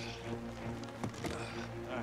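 Film score of sustained tones, with a few short knocks and scuffs about a second in as a hard plastic case is shoved over rock and moss.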